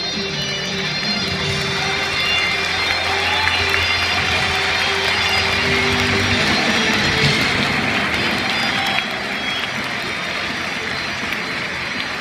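Guitar-led music playing over a stadium's public-address system, heard from the stands, with crowd noise swelling through the middle and dropping off about nine seconds in.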